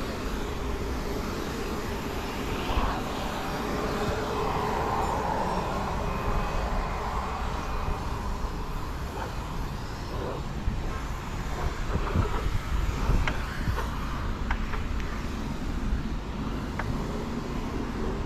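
Wind rumbling on the microphone of a handlebar camera on a moving bicycle, with road noise and a few short knocks and rattles from the bike. A passing motor sound swells and fades a few seconds in.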